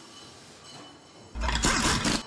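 Plastic LEGO pieces pressed together by hand on a baseplate, close to the microphone. A sudden loud burst of rumbling, rubbing noise lasts just under a second, starting a little past halfway.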